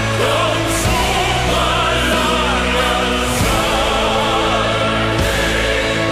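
Symphonic power metal played live, with choir voices singing over long held chords.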